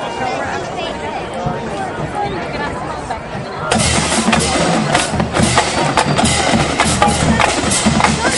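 Chatter from the stands, then a little past halfway a marching band's percussion section suddenly comes in loud, with rapid drum and bass-drum hits in a driving rhythm.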